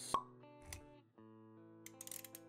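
Animated-intro sound design: a sharp pop just after the start, then soft sustained music notes with a dull low thump a little before the middle.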